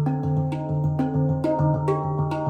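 Stainless-steel handpan in D Hijaz tuning played with the fingers: a quick run of struck notes, several a second, each ringing on over a steady low note beneath.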